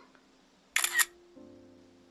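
Smartphone camera shutter sound, one quick snap with two clicks close together, as a selfie is taken; faint soft music follows near the end.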